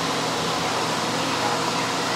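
Steady whir of fans with a faint low hum underneath, holding an even level throughout.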